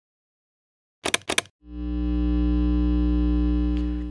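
Logo sting: a few quick sharp percussive hits, then a held synthesizer chord with a deep bass that stays steady for over two seconds.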